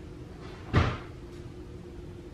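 A single dull thump about three quarters of a second in, over a steady low hum.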